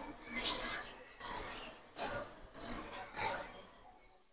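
Bullzen 5000-series spinning reel worked by hand, its mechanism giving five short, high-pitched buzzing bursts about half a second to a second apart.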